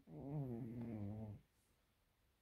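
A sleeping domestic cat snoring: one low, drawn-out snore lasting just over a second, starting right at the beginning.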